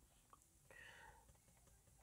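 Near silence: a pause in the narration, with only a very faint, brief sound a little before the middle.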